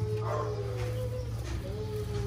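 Bamboo rat giving thin, wavering whining calls: one held for over a second, then a second shorter one near the end, over a steady low hum.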